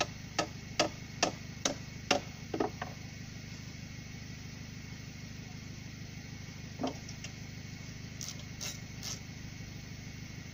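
Hammer driving a nail into a timber rail: about eight sharp strikes, a little over two a second, which stop about three seconds in. A single duller knock follows near the middle, and a few light knocks come near the end.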